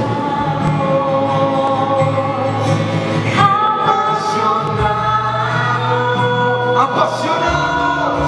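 Slow worship music: several voices hold long sung notes over a sustained band accompaniment, moving to new notes about three and a half seconds in and again near seven seconds.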